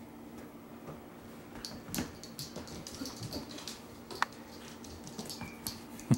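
Faint scattered clicks, taps and scuffles of a Bernese mountain dog puppy chasing and mouthing a spiky rubber ball toy on carpet, with sharper taps about two and four seconds in.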